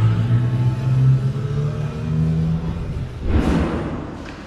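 Electronic music with a deep bass line holding low notes and stepping between pitches, ending in a short whoosh transition effect.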